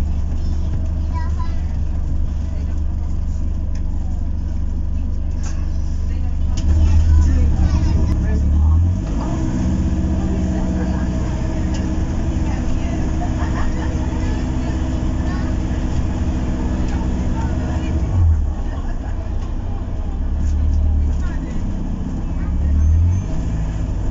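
Cabin of an Alexander Dennis Enviro400 MMC hybrid double-decker bus with BAE Systems drive, moving through traffic: a continuous low rumble of drivetrain and road. About ten seconds in a steady hum joins it and holds for about eight seconds before dropping away.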